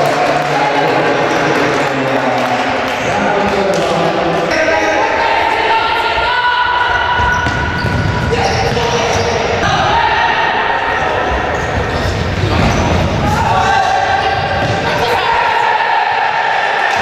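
Futsal ball being kicked and bouncing on a wooden sports-hall floor, with knocks clustered in the middle and later part, and players' voices echoing in the hall.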